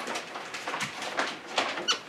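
Soft rustles and taps of room handling noise, with a brief high squeak near the end.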